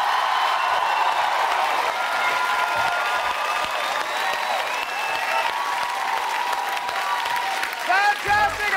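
Studio audience applauding and cheering, with voices calling out over steady clapping.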